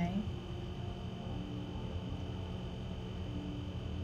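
Quiet room tone: a low rumble with a steady high-pitched whine, and a voice trailing off at the very start.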